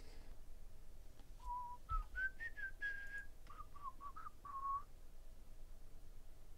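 A person whistling a short tune of about ten notes: it climbs, holds one longer note in the middle, then steps back down and stops near the end. Faint handling noise of trading cards lies under it.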